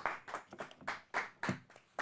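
A small audience applauding, the individual claps distinct and irregular.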